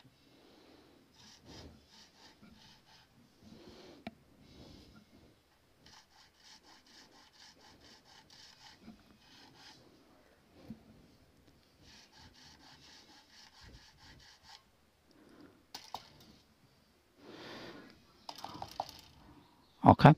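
Nut file rasping back and forth in a bass guitar's nut slot, in short runs of quick strokes with pauses between, deepening a slot that is still too high. A sharp, loud knock comes right at the end.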